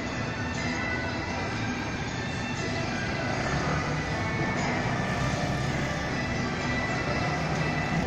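Loud, steady din of a temple procession: festival music with thin held tones buried in a thick wash of noise.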